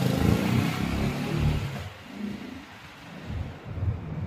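Jawa 42 motorcycle's single-cylinder engine as the laden bike rides past and away, loud in the first second or so, then fading into the distance.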